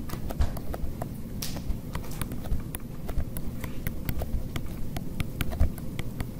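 Stylus tapping and scratching on a tablet screen while handwriting, a quick irregular run of light clicks over a low steady rumble.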